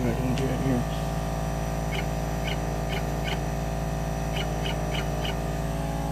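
CHMT36VA pick-and-place machine's built-in vacuum pump running with a steady hum, and two runs of four faint ticks from the placement head.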